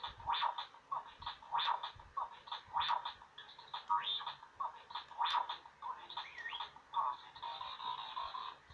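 Star Wars R2-D2 Bop It toy's small speaker playing a fast run of short electronic beeps and chirps while a game is in progress, two or three sounds a second.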